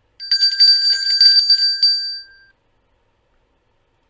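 A pub's last-orders bell rung rapidly for about two seconds: a quick run of strikes that then rings on briefly and fades out about halfway through.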